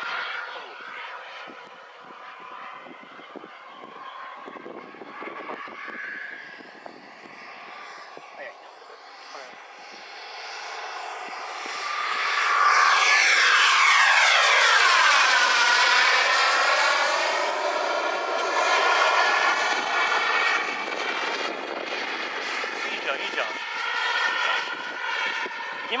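A radio-controlled model MiG-29 jet flying by low. Its whine is faint at first, swells loud about twelve seconds in, and drops in pitch as it passes. It then fades off gradually as the jet climbs away.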